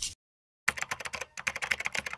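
Keyboard typing sound effect for typed-on-screen text. Rapid clicks in short runs start just over half a second in, with a brief pause between runs.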